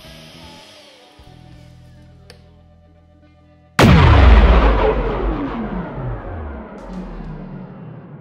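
Quiet background music, then about four seconds in a sudden loud boom-like hit from an end-logo sound effect, with falling tones sweeping down as it fades away over the following seconds.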